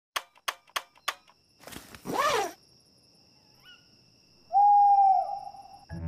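Owl hooting: one long, steady hoot of about a second near the end, after a fainter brief call. Earlier come a few quick clicks and a child's short giggle.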